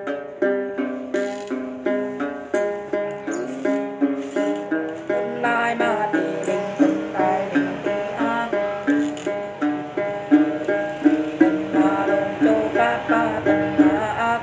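Đàn tính, the long-necked gourd lute of Tày-Nùng Then singing, plucked in a repeating tune of about two strokes a second, the figures growing quicker and busier in the second half.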